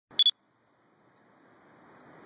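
A camcorder's record-start beep: one short, high electronic beep with two quick pulses at the very start. Faint outdoor background noise then slowly rises.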